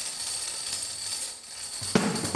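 Neapolitan tamburello (frame drum with jingles) played solo: the jingles are kept shimmering in a continuous rattle with no hard strikes on the skin, thinning out about one and a half seconds in, before a sharp strike on the drum right at the end.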